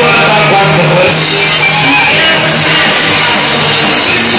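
Live regional Mexican band music, played loud: tuba bass notes under strummed guitar and drums.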